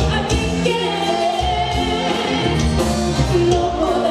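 Live Tejano band playing a song: a woman singing lead over accordion, electric bass, drums and acoustic guitar.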